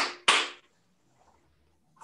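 Two sharp hand claps about a third of a second apart, each with a short ring of small-room echo: the ceremonial double clap of an aikido bow-in.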